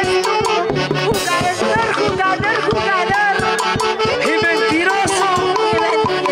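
Live band music with saxophones and a drum kit with timbales keeping a steady beat, and a woman singing through a microphone over it.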